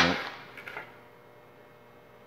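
A spoken word trails off, then a few faint clicks from hands handling a small spool of aluminum MIG wire, picking at the wire's loose end.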